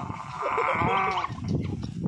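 A goat bleating, one wavering call lasting about a second, with short low knocks and handling noise underneath.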